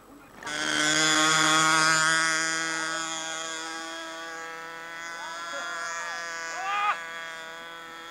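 RC model biplane's engine running at high power with a steady, high buzz. It starts suddenly about half a second in, is loudest in the first couple of seconds, then slowly fades.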